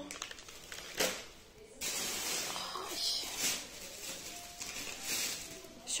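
Thin plastic carrier bags rustling and crinkling in irregular handfuls as groceries are rummaged for and pulled out of them.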